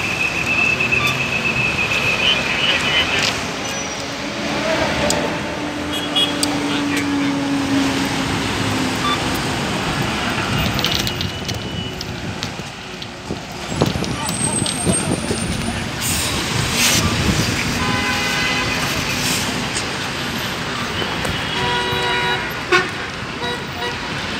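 Road traffic noise with vehicles passing. A long, steady, high-pitched toot lasts about three seconds at the start, and a lower steady toot follows a few seconds later. Voices sound in the background.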